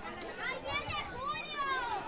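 A crowd of children shouting and calling out over one another, high voices overlapping, with one long loud call about one and a half seconds in.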